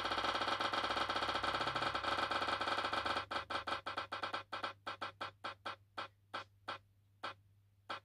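Spinning prize-wheel randomizer app's ticking sound effect, played through a computer's speaker as the wheel spins. The ticks come so fast for the first three seconds that they blur into a buzzy tone, then separate and slow steadily to about one a second as the wheel comes to rest.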